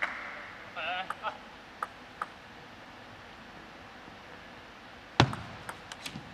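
Table tennis ball making a few light, sharp clicks in the first two seconds as the server readies the ball, then a lull. About five seconds in comes one loud, sharp knock, the start of the point, followed by lighter clicks of ball on bat and table as the rally begins.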